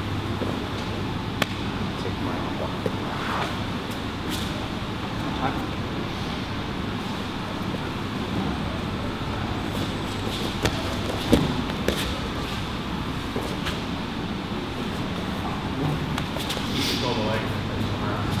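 Grappling on a mat: gi fabric rustling and bodies shifting, with a few short knocks, the sharpest about eleven seconds in, over a steady room hum.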